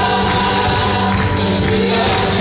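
Live gospel praise-and-worship music: several women singing together into microphones over a keyboard-led band, with held, sustained notes.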